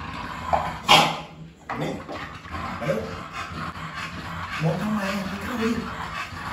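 A dog whimpering, with a sharp, loud noise about a second in.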